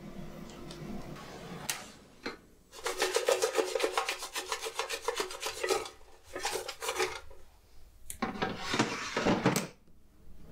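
Frozen fries rattling in a Tefal Easy Fry air fryer basket as it is shaken in rapid strokes for about three seconds, partway through cooking so they crisp evenly. Two shorter scraping rattles follow as the basket is handled.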